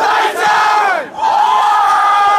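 A football team yelling together in a victory cheer: two long group shouts, the first falling away about a second in before the second begins.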